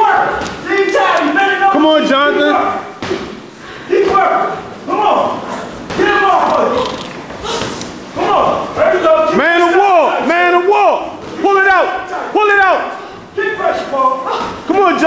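Men's voices calling and shouting in a large echoing room, with scattered sharp thuds of boxing gloves landing during sparring.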